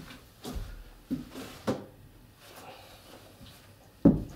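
Handling noise: three short, soft knocks in the first two seconds as objects are moved and set down, then faint rustling.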